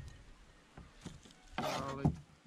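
A few faint, scattered clicks and taps of hands-on food prep: sliced onion being handled and dropped into a glass jar, with a single spoken word near the end.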